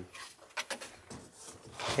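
Hands rubbing and tapping on the bare floor panel in the trunk of a Mercedes-Benz W116, a few short scrapes and light knocks.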